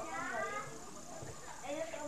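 People talking, with a faint steady high-pitched whine underneath.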